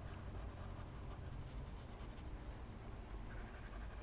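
Faint scratchy rubbing of a pressed-paper blending stump worked over colored-pencil wax on paper, pushing the wax to soften and blend the blue color.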